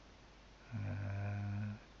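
A man's slow, drawn-out voice holding one word in a low, even monotone for about a second: speech from a hypnotic induction.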